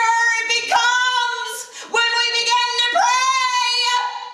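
A woman singing solo at the pulpit microphone in a high voice, long held notes with slow bends in pitch, breaking for a breath about halfway through.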